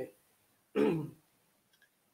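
A man clearing his throat once, briefly, about a second in, followed by a faint small click.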